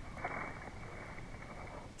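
Faint, steady background noise with no distinct sound in it: a lull between spoken lines.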